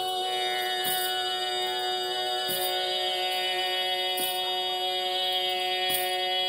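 Steady tanpura drone accompanying Carnatic singing, sounding alone between sung phrases, with a faint string pluck about every second and a half.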